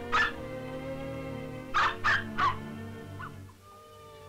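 Film-score music with long held notes, over which come short high yelps of puppies yapping: two right at the start and three more close together around two seconds in.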